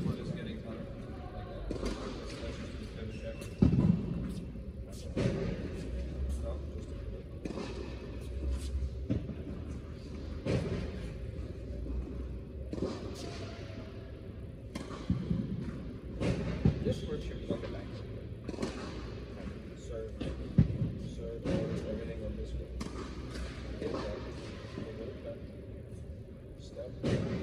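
Low, indistinct talking in a large, echoing indoor tennis hall, broken by a few sharp thuds, the loudest about four seconds in and again about twenty seconds in.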